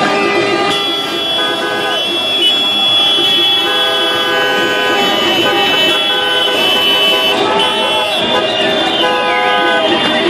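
Many car horns of different pitches honking together in celebration, some in short toots and some held in long blasts, with people shouting and chanting over them.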